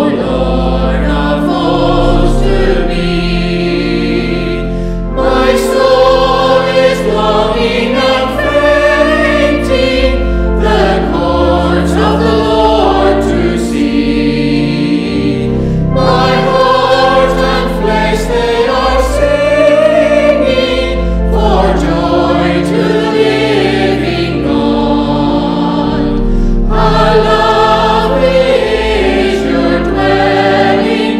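Small mixed choir of men's and women's voices singing a hymn with organ accompaniment, the organ holding long low bass notes under the melody. There are short breaths between phrases.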